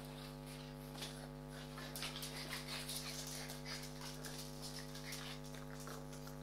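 Two French bulldogs tussling over a rubber chicken toy: faint, scattered snuffles and scuffles from the dogs, busiest between about two and four seconds in, over a steady hum.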